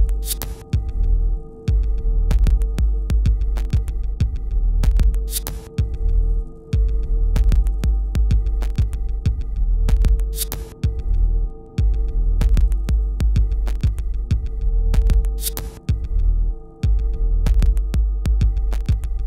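Minimal electronic glitch music: a deep throbbing bass pulse under a steady hum-like tone, short repeated high beeps and many sharp clicks. The bass drops out briefly several times, and a short hiss burst comes about every five seconds.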